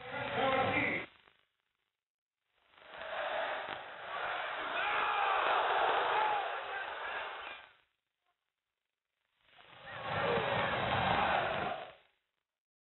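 Football stadium crowd chanting and singing in three stretches, each cut off abruptly into dead silence; the sound is dull and band-limited, as from an old TV recording.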